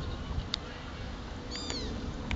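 Wind rumbling on the microphone, with a click about half a second in and a brief high-pitched call that falls in pitch near the end.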